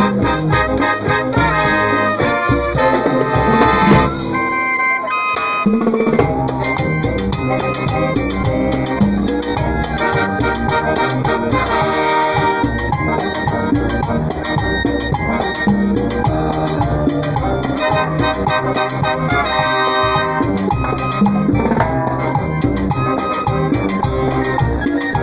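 Live brass band playing: trumpets, trombones and sousaphones over snare drums, timbales and bass drum. The bass drops out briefly about five seconds in.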